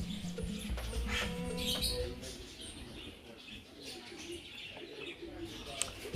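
Background music fading out over the first two seconds, leaving faint bird calls from the aviary's birds.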